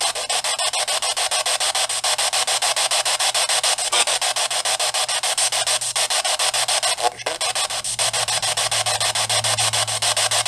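Radio static from a spirit box scanning stations, chopped into rapid, even pulses of about eight a second and played through a small speaker, as it is used to try to catch spirit voices.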